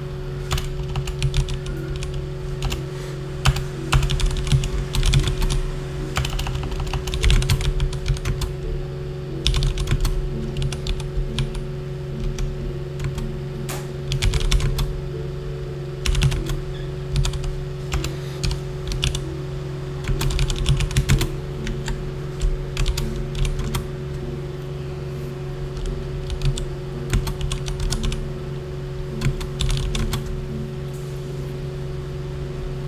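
Computer keyboard typing in uneven bursts of quick keystrokes with short pauses between them, over a steady low hum.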